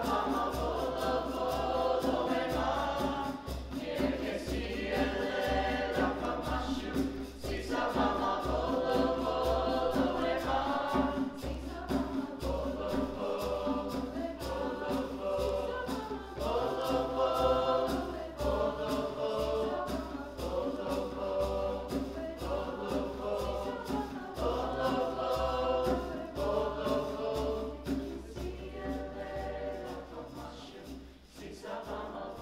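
Mixed choir of boys and girls singing a traditional Zulu song in chordal harmony, accompanied by djembe and shaker.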